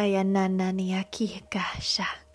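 A woman's voice intoning light-language syllables. A syllable is held at one steady pitch for about a second, then come a few short syllables, and a breathy whisper near the end.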